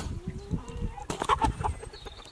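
Chickens clucking, with knife chops on a wooden cutting board.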